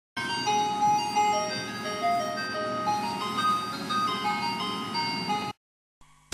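A simple electronic jingle of single chiming notes stepping up and down in a tune, over a steady low background noise, cutting off abruptly near the end.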